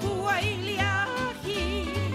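Hawaiian love song: a singer's voice held in wavering vibrato over a line of low bass notes changing about every half second.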